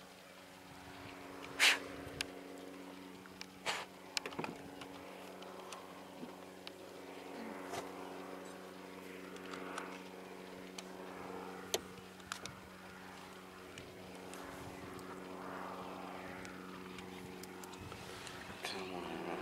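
A steady low mechanical hum made of several even tones, with a few sharp clicks or knocks, the loudest about two seconds in.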